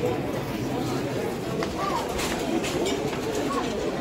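Background chatter of a crowd of men at a livestock market, with a couple of short chirp-like calls and a few faint clicks about halfway through.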